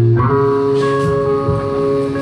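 Live rock band playing loud electric guitars with drums. The guitars hold ringing chords, shifting to a new chord about a fifth of a second in, with a sharp hit about a second in.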